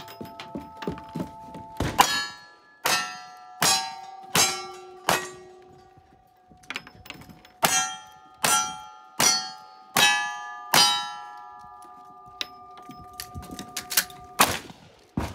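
Ten revolver shots in two strings of five, about three-quarters of a second apart, with a pause of about two seconds between the strings; each shot is followed by the ringing of a struck steel plate target. Light clicks and handling noises near the end.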